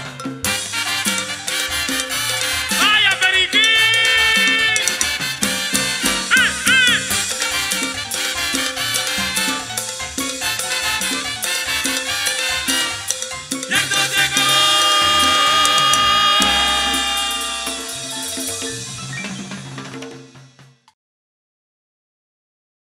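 Live Latin tropical dance orchestra playing, with brass, saxophones, bass and hand percussion. About 14 seconds in the music turns to long held chords, then fades out to silence shortly before the end.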